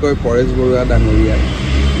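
A man speaking Assamese into press microphones. From about halfway through, a low, steady rumble of a motor vehicle's engine rises underneath.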